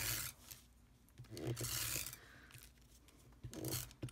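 Cardstock rubbing and sliding against cardstock as a paper panel is pressed and smoothed down onto a card base by hand. It comes in two scratchy stretches, the longer one about a second in, lasting over a second.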